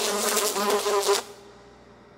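A fly buzzing, its pitch wavering up and down, stopping a little over a second in.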